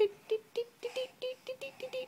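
A toddler's voice chanting a rapid string of short, clipped syllables, about five a second, on one note that creeps slowly upward in pitch, as she spins around.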